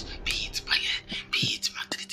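A voice whispering a prayer under the breath, in quick, breathy bursts of words.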